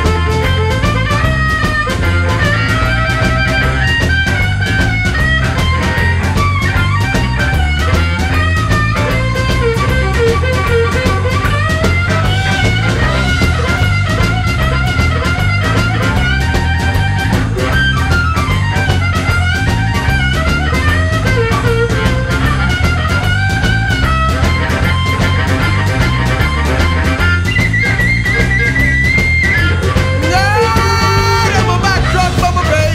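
Blues band playing an instrumental break: a lead guitar line over bass and drums with a steady beat, and a long held high note near the end.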